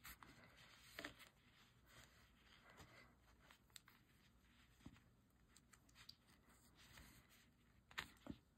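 Near silence with a few faint, brief rustles and clicks of hands handling yarn and a knitted piece while tying a knot.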